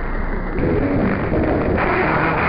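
Mediumwave AM radio static and hiss from a web SDR receiver being tuned between stations, with brief snatches of station audio passing through. The hiss turns brighter about half a second in and again near the end as the receive filter is widened.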